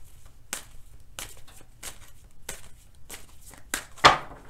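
Tarot deck being shuffled by hand, a soft card flick or slap about every two-thirds of a second, six in all, the last the sharpest.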